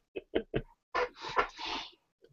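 Soft male laughter over a video call: a few short chuckles, then breathy laughing in the second half.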